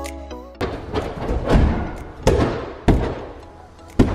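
Background music cuts off just over half a second in, giving way to a run of heavy thuds of bare feet and a body hitting an inflatable airtrack during a tumbling combo. The thuds come roughly every half second to second, and the last comes as he lands in a crouch near the end.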